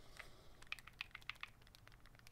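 Faint, irregular clicks and taps, about ten in two seconds, from a small plastic e-liquid bottle being handled in the hand.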